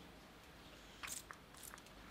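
Faint, brief crackling clicks about a second in and again a little later, from a makeup fixer's container being opened.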